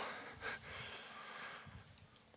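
A short, sharp breath about half a second in, then faint breathing: a person straining while lowering into a bodyweight exercise.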